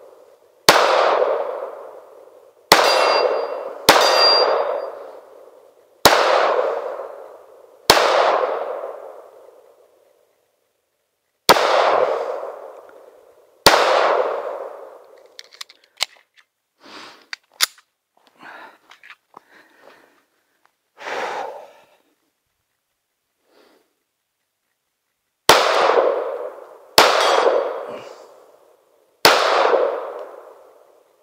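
Pistol shots from a 9mm Colt Competition 1911, each followed by a clang ringing out for a second or more. There are seven shots over the first fourteen seconds, a stretch of small metallic clicks and handling noises, then three more shots near the end.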